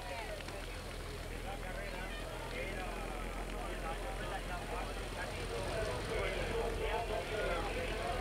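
Indistinct voices talking in the background, a little louder near the end, over a low, steady engine drone.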